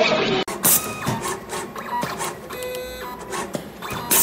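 Automatic 5-core cable cutting and stripping machine running, starting abruptly about half a second in. Its stepper-driven feed and blades make short pitched motor whines that start and stop in steps, with sharp clacks about twice a second.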